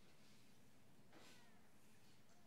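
Near silence: faint room tone, with one faint, brief, high squeak about a second in.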